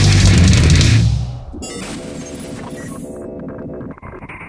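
Metal band playing at full volume that breaks off about a second in, leaving a quieter held, ringing chord that sustains as the song ends.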